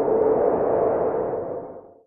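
Electronic logo-intro sound effect: a sustained droning swell with a steady humming tone in it, fading out near the end.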